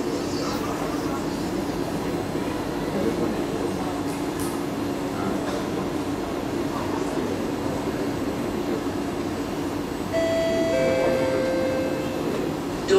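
A stationary Kawasaki C151B MRT train with its doors open: a steady hum with passengers chattering in the background. About ten seconds in, the door-closing warning chime starts, two held tones stepping down in pitch, signalling that the doors are about to close.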